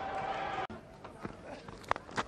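Open-air cricket-ground ambience with a light crowd murmur that drops away abruptly under a second in, then a short sharp crack near the end as the bat strikes the ball.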